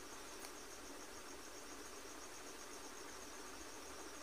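Faint insect chirping: a steady, high, evenly pulsed trill over low background hiss.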